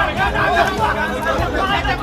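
A crowd of men talking loudly over one another, many voices at once, in a tense scuffle.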